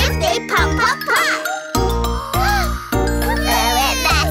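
Children's nursery-rhyme song: a child's voice singing over bright backing music with a pulsing bass.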